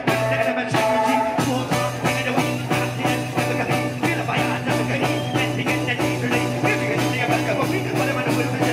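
Live reggae band playing with a steady beat: electric guitar over a deep bass line and drums, heard from within the crowd.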